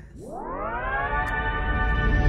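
A synthesizer tone with many overtones sweeping up in pitch over about a second, then holding steady and growing louder: the rising swell that opens an intro jingle.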